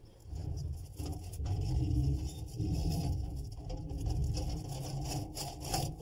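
Rope rubbing and a weight scraping down inside a brick chimney flue as it is lowered, an uneven low rumbling scrape that rises and falls.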